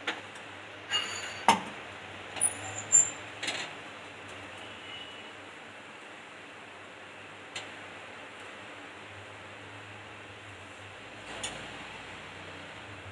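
Steady faint hiss from a paratha cooking on an iron tawa over a gas burner. In the first few seconds come several sharp clinks of steel bowls and a spoon being set down, with one more click in the middle and another near the end.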